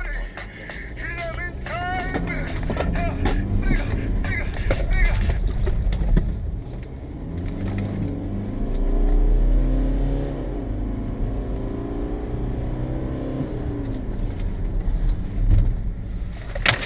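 Car engine accelerating hard, heard from inside the cabin, its pitch rising and dropping back several times as it shifts up through the gears.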